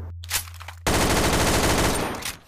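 Video-game automatic rifle fire used as a comic sound effect: a few quiet clicks, then a rapid, sustained burst of shots that starts abruptly nearly a second in.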